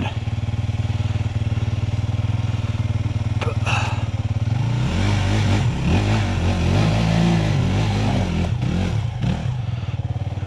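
Dirt bike engines idling steadily. From about five seconds in, an engine revs up and down for several seconds as a bike climbs the rock ledges.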